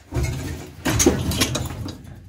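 Sheet-metal cabinet of an old refrigerator being bent and wrenched apart by hand: irregular scraping and rattling of the thin metal, loudest about a second in.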